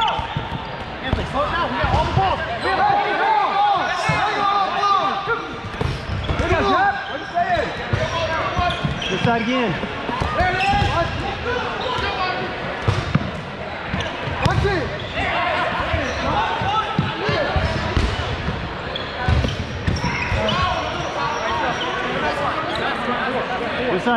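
Dodgeball players shouting and calling out over each other, mixed with scattered sharp thuds of rubber dodgeballs hitting players and bouncing on the hardwood court, echoing in a large gym hall.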